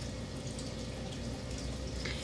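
Steady low background hiss and hum with a faint constant tone, with no distinct clicks, beeps or other events.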